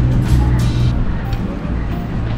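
Background music with steady low bass notes.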